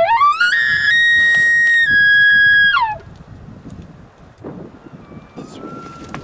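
A maral (Altai wapiti) stag bugling: one long call that rises steeply from a low note to a high whistle, holds there about two seconds with a small step down in pitch, then drops off. A fainter, shorter whistle follows near the end.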